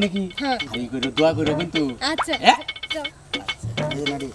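Several people's voices talking and calling out over steady background music.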